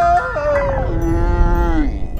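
A cartoon polar bear character's long, drawn-out yell. It is held on one pitch, steps lower about a second in, then falls away just before the end, over a low rumble.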